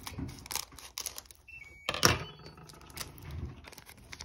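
Scissors cutting open a foil trading-card booster pack, the foil wrapper crinkling and crackling as it is handled. The loudest sound is a sharp crackle about two seconds in.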